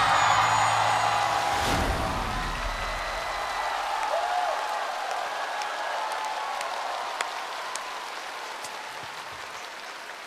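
Studio audience applauding with a few shouts, slowly dying away. A low tone fades out in the first two seconds, and a brief sharp hit sounds about two seconds in.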